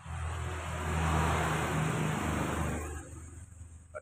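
A motor vehicle passing by: its engine noise swells, holds for a couple of seconds, and fades away near the end.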